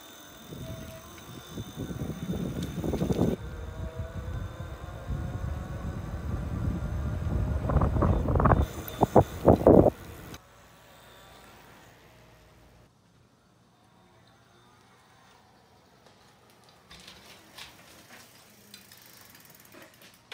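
Wind buffeting the microphone and tyre rumble from an e-bike ridden at speed, with a faint whine from its 1000 W hub motor rising in pitch as it speeds up. Heavy wind gusts come near the end of the ride, then the sound falls to near silence about ten seconds in.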